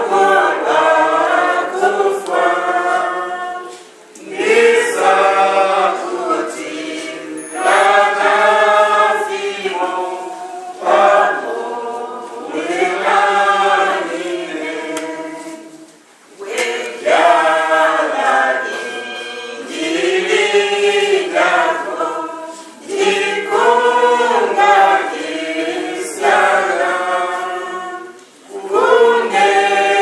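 Several voices singing a hymn together, unaccompanied, in phrases of about six seconds, each ending in a brief pause for breath.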